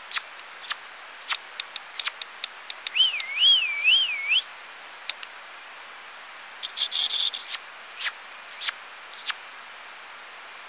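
Wild birds calling: short sharp calls repeated at irregular intervals, and a warbling whistle that rises and falls three times about three seconds in, over a steady thin high-pitched whine.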